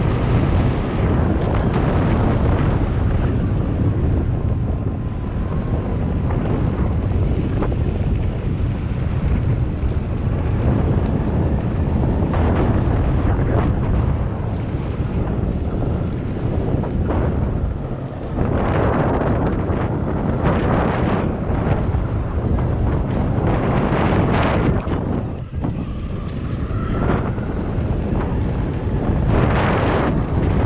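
Heavy wind buffeting the microphone on a moving electric mountainboard, over the rumble of its tyres rolling on pavement and then on a leaf-covered dirt trail. The noise is steady and loud throughout, with rougher spells as the board runs over the uneven trail.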